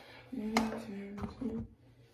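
A voice humming or singing a short run of a few held notes that step down and back up in pitch, with two sharp clicks in the middle.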